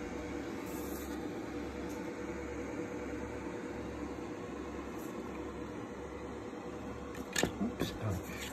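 Steady background hum of a running appliance or room machinery, with a faint constant tone. A few brief handling rustles and clicks sound near the end.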